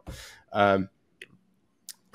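A breath, then a man's short hesitant "um", followed by a pause with a couple of faint clicks.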